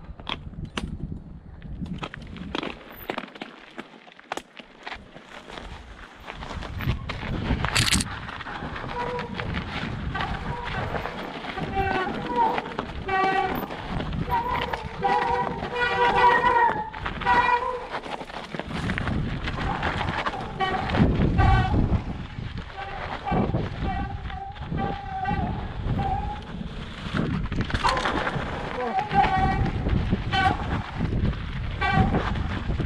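Mountain bike descending a rough snowy trail, with tyre rumble, knocks and rattles and a sharp knock about eight seconds in. After that, brakes squeal in repeated honking tones through most of the rest of the ride.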